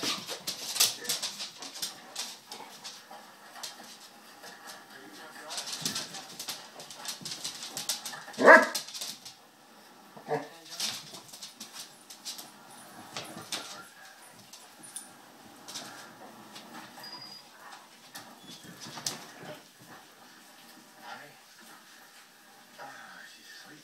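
Two basset hounds play-fighting on a wood floor: scuffling and scrabbling throughout, with one loud bark about eight and a half seconds in and a shorter one about two seconds later.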